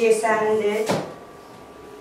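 A woman speaking for about a second, ending in a single sharp knock, then low room noise.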